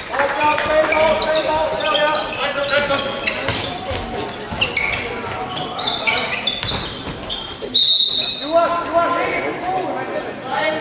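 Handball game sounds in a sports hall: players shouting and calling to each other, the ball bouncing on the floor, and shoes squeaking. A short, high referee's whistle blast comes about eight seconds in.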